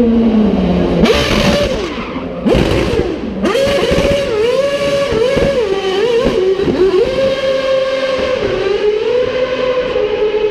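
A Red Bull Formula 1 car's 2.4-litre Renault V8 revving hard through a wheel-spinning burnout. Its pitch drops, then shoots up, and swings up and down several times as the throttle is worked, then holds steady near the end.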